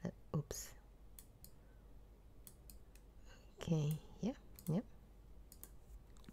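Scattered computer keyboard keystrokes and clicks, a few every second and fairly quiet, with a brief murmured voice about four seconds in.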